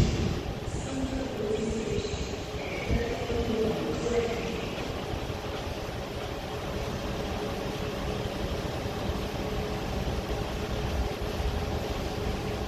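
Orange rail service train running as it moves away along the tracks, a low rumble with a steady hum that stays fairly even in level.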